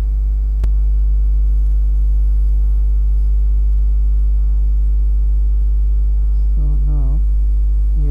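Loud, steady electrical mains hum with a stack of overtones, picked up by the recording chain, with a single sharp click just over half a second in. A short wordless voice sound near the end.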